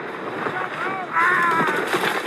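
Raised voices calling out over a steady rush of wind-like noise, with a short call just before a second in and a louder, longer call after it.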